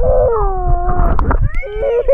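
A child's voice in a long drawn-out wail that slides down in pitch for about a second, with another wavering call starting near the end, over the low knocking and sloshing of a camera moving in and out of pool water.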